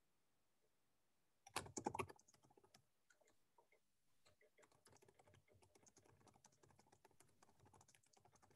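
Faint typing on a computer keyboard: a quick cluster of louder keystrokes about a second and a half in, then light, steady typing from about four seconds on.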